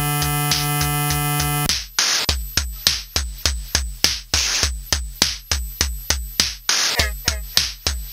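Experimental electronic techno: a drum-machine kick under a held synthesizer chord. The chord cuts off about two seconds in, leaving the kick and short hiss-like percussion hits in a steady beat of about three a second.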